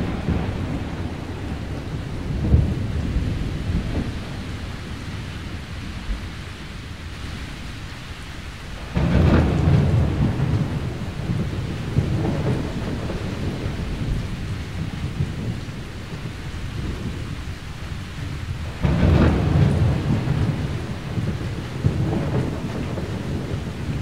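Thunderstorm: steady rain with rolling thunder. Two loud thunderclaps break in, about nine and nineteen seconds in, each rumbling away over several seconds.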